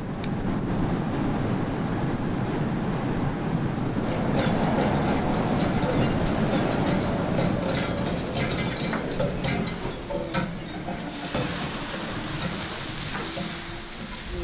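Fishing cutter working at sea: a steady rumble of engine and deck machinery with clanking knocks from the gear, giving way near the end to a rushing hiss of water spray over the side.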